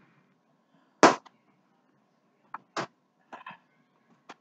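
Handling knocks: one sharp knock about a second in, then a few lighter clicks and taps as objects are bumped and picked up.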